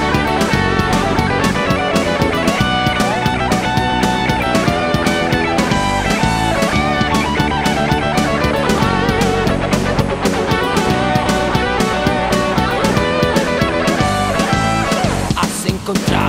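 Instrumental passage of a Spanish-language heavy metal song: electric guitars with wavering, bending lead lines over bass and a drum kit. The band thins out briefly near the end.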